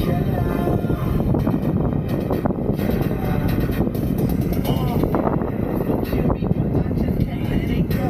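Strong wind rumble on the microphone from riding an electric unicycle along at speed, with a song with singing playing underneath.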